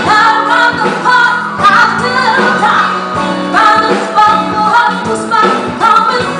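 A woman singing lead vocals into a microphone over a live band with keyboards, guitar, bass and drums, performing a love song.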